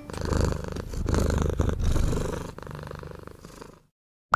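A domestic cat purring steadily, close up; the purr grows quieter and fades out just before the end.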